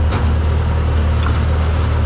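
Small tracked loader's engine running steadily at idle, a deep, even hum, with the machine stopped.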